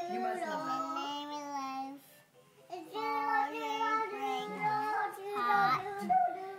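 A young child singing a song in a small voice, holding long notes, with a brief pause about two seconds in.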